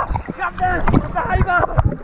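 A man laughing in the water, in short bursts of voice about half a second in and again near the end, over a steady low rumble of wind and water on the handheld action camera's microphone.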